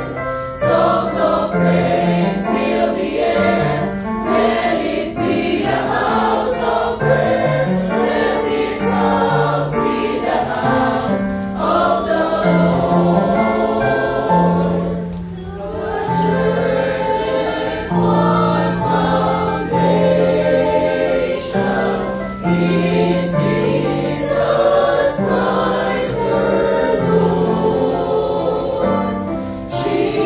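Mixed-voice church choir singing a hymn in parts, with a short dip between phrases about halfway through.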